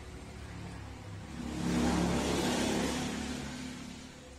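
A road vehicle passing close by, its engine and tyre noise swelling to a peak in the middle and fading away near the end.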